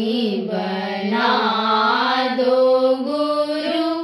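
A single voice singing a chant in long held notes that bend slowly in pitch.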